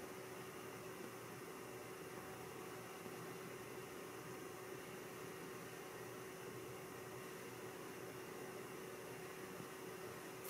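Quiet, steady hiss of room tone with a faint constant hum; no distinct sounds stand out.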